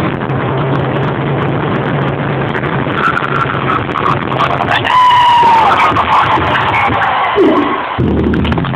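Live concert music over a PA, heard from within the audience, mixed with crowd noise, with a high voice held for about a second some five seconds in.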